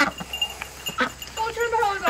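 A goat bleats once near the end, a single drawn-out call, after a few faint clicks.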